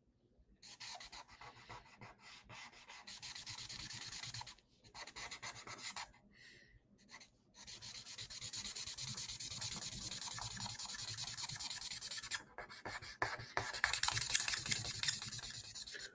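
A drawing implement scratching and rubbing across paper in quick, dense strokes, with a few short pauses, as a drawing is shaded in.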